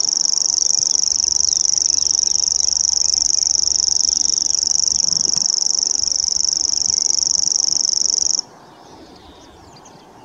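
Grasshopper warbler reeling: a high, even, unbroken trill of very rapid pulses that cuts off suddenly about eight and a half seconds in.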